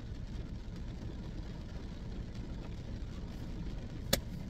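Steady low rumble with a faint hiss: background noise inside a car's cabin, with no sudden sounds.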